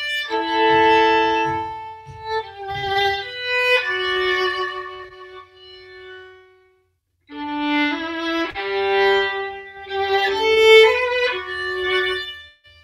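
A solo violin plays a slow lullaby melody in long bowed notes, some of them two notes at once. About halfway through it fades into a short silence, then comes back with new held notes.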